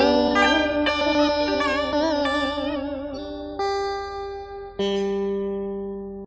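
Instrumental karaoke backing for a vọng cổ song: plucked strings playing notes that bend and waver. Near the end come two long held notes, struck about a second apart.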